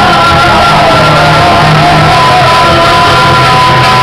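Two men singing loudly, one into a microphone, over an acoustic guitar. They hold one long note through the second half.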